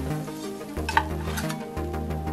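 Metal kitchen utensils clink on an iron dosa tawa, two sharp clinks about a second in, over steady background music.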